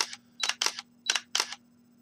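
Canon EOS 5D's shutter and mirror firing one frame after another, a run of sharp clicks in rough pairs over about a second and a half. Magic Lantern's auto exposure bracketing is stepping through a bracketed sequence from a single press of the shutter button.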